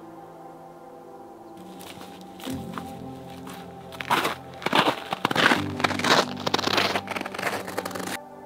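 Footsteps crunching through dry leaf litter and twigs, coming in about a second and a half in and growing much louder from about four seconds in, with soft ambient music underneath.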